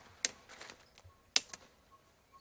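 A few sharp snaps and clicks, two of them louder than the rest: twigs and stems of a calliandra fodder shrub breaking as branches are picked by hand.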